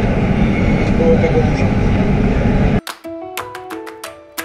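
Loud, steady rumble of a metro train carriage in motion, with faint voices in it. It cuts off suddenly near the end and is replaced by background music of plucked notes.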